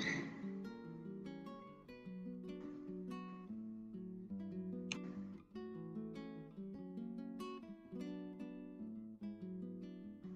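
Quiet background music: acoustic guitar playing a steady run of picked notes.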